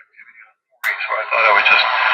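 Hammarlund HQ-140-XA shortwave receiver's speaker cutting in suddenly about a second in with a man's voice from a 40-metre AM amateur station, over a bed of static hiss. The crystal filter is switched out, so the full wide bandwidth is heard.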